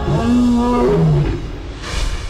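Male lion roaring once, a long deep call that drops in pitch near its end and fades, followed by a brief swell of noise at the very end.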